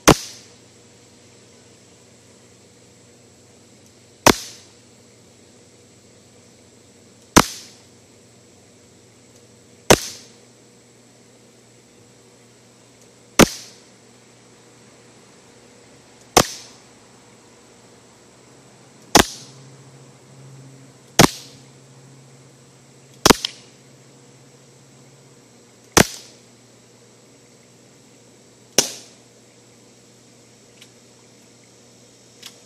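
CO2-powered BB pistol firing eleven single shots a few seconds apart, each a sharp crack with a short tail, as the BBs strike a phone's glass screen.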